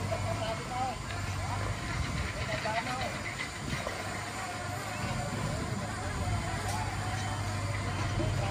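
Dump truck's diesel engine running steadily while its tipper bed rises to unload dirt, with people talking in the background.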